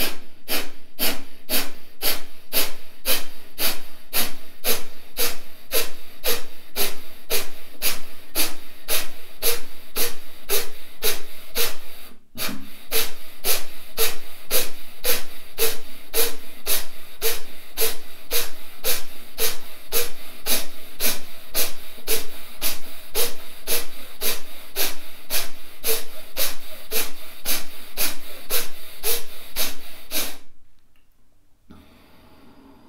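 Kapalabhati breathing: a man's rapid, forceful exhalations through the nose, a sharp puff a little over two times a second, with one short break about twelve seconds in before the pumping resumes.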